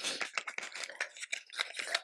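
Small plastic makeup tubes being handled close by: a quick run of irregular rustles, scrapes and light clicks.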